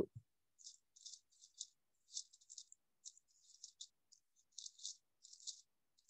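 Near silence, with faint, irregular short rustles and clicks scattered throughout.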